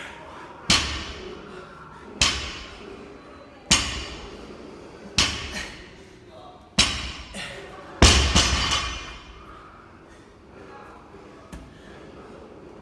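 Barbell loaded with 20 kg rubber bumper plates set down on a rubber gym floor six times during deadlift reps, about one and a half seconds apart. Each touchdown is a heavy thud with a brief ringing tail; the last is the loudest and rings on longest.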